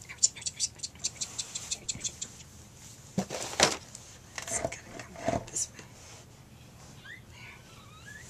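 A quick run of short breathy puffs or clicks, about seven a second for two seconds, then three stronger breathy bursts, as a woman works over a struggling newborn cockapoo puppy to get it breathing. A couple of faint rising puppy squeaks come near the end.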